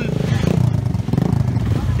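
Kawasaki KLX150 dirt bike's single-cylinder four-stroke engine running at low revs, a steady rapid putter, as the bike creeps down a rocky slope into a creek crossing.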